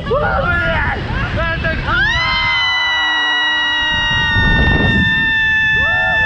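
Riders on a Slingshot reverse-bungee ride shrieking and laughing, then from about two seconds in one long high scream held for about four seconds, over a low rumble of wind on the microphone.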